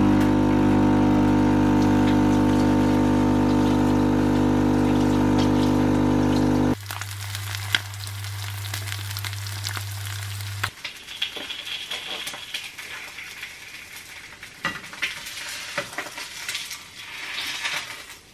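Coffee machine's pump humming loudly and steadily as it dispenses coffee into a glass of milk, cutting off suddenly about seven seconds in, with a lower hum lasting a few seconds more. Then fried eggs sizzling in a pan, with a few clicks of a utensil.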